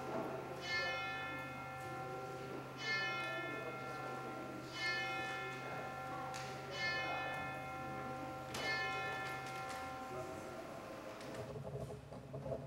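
A church bell tolling slowly, about one stroke every two seconds, five strokes in all, each ringing on and fading into the next.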